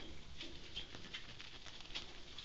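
Faint scratchy rustling with scattered light ticks, from a pet ferret moving and scrabbling about on soft bedding.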